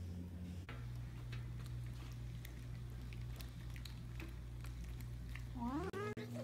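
Plastic spoon stirring sticky glue slime in a plastic tub, giving scattered small clicks and squelches. Underneath runs a steady low drone that shifts pitch under a second in, and a rising tone comes near the end.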